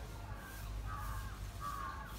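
A crow cawing three times, each call short and harsh.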